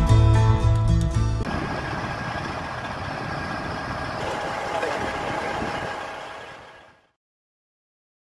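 Background music cuts off about a second and a half in. A steady outdoor rumble follows, most likely a parked semi-truck's diesel engine idling, and fades out to silence shortly before the end.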